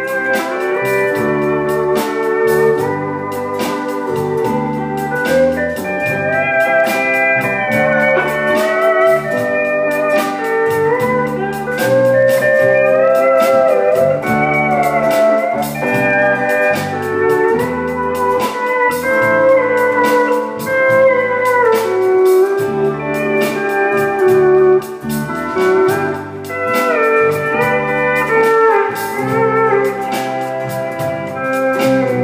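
Live country band music led by a pedal steel guitar carrying the melody in sliding, gliding notes over guitar and bass accompaniment.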